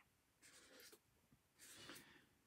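Faint scratching of a felt-tip marker on sketchbook paper: two short strokes, one about half a second in and one near the end, as curved lines are drawn.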